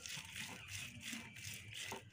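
Faint scratching rustle of a cut lemon rubbed in quick back-and-forth strokes over the kernels of a charred roasted corn cob, working a spice mix onto it.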